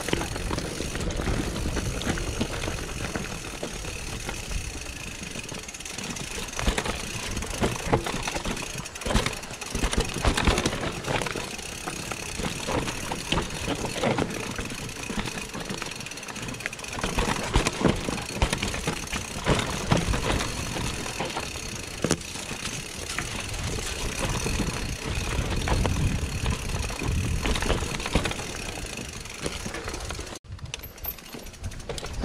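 Mountain bike descending a rough, rocky dirt singletrack: continuous rolling and rattling noise from the tyres, frame and drivetrain, with many short knocks as the wheels strike rocks and roots.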